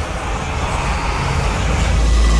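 A cinematic whoosh-riser sound effect: a rushing swell of noise, like a jet passing, growing louder over a low musical drone as it builds toward a deep boom at the very end.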